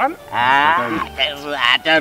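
Men's voices in lively conversation: a loud, drawn-out exclamation with wavering pitch, then more drawn-out voiced sounds near the end.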